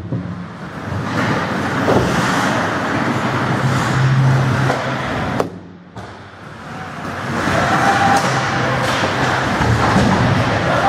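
Ice hockey play at close range: skate blades scraping and carving the ice, with a few sharp clacks of sticks and puck, over a steady low hum. The noise drops away briefly about halfway through, then builds again.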